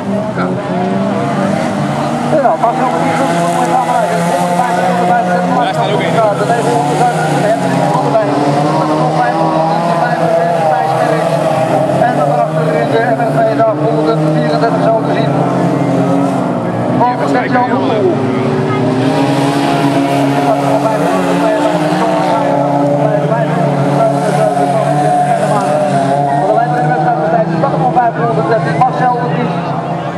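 Several autocross cars racing on a dirt track, their engines revving hard together, pitches rising and falling as they accelerate, shift and corner.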